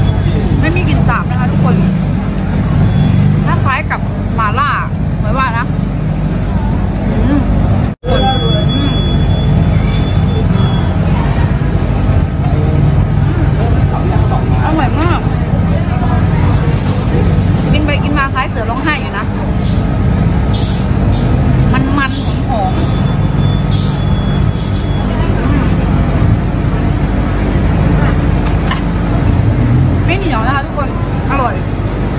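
Busy street ambience: a steady low rumble of road traffic under scattered voices of people nearby. The sound cuts out for a moment about eight seconds in.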